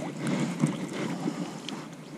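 Magnet-fishing rope being hauled in hand over hand, lifting the magnet and a tangled clump of debris up out of the canal, with a few faint handling ticks over wind noise on the microphone.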